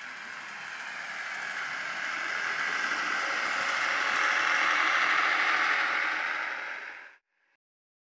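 A passing train's running noise, a steady rushing sound without a clear engine note, that swells to a peak about five seconds in, then fades and cuts off abruptly about seven seconds in.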